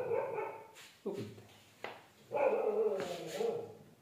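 A dog barking several times, the loudest and longest bark about two and a half seconds in.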